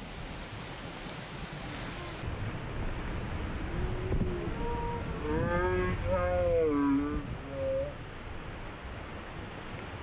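Slowed-down audio of a boat towing a tube: a steady rush of motor and water noise, with deep, drawn-out voices yelling at a wipeout about four to seven seconds in.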